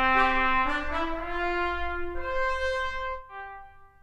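Sampled trumpets from the CineBrass Pro library play back a short phrase, a long held line and shorter notes sounding at the same time. The phrase steps upward, thins to a single note and fades out just before the end.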